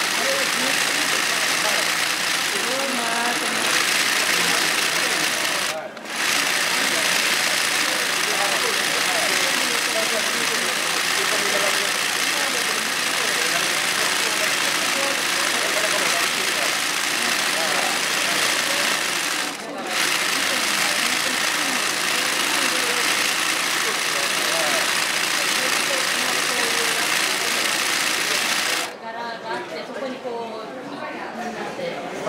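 A yokofuri (swing-needle) industrial embroidery sewing machine running steadily while stitching. It pauses briefly twice, about six seconds in and about twenty seconds in, and stops about a second before the end.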